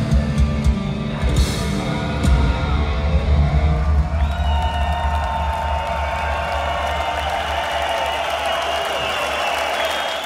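Heavy metal band playing the closing bars of a song live: drums and distorted guitars hit the final accents, then a chord is held and rings on from about four seconds in, with the crowd cheering.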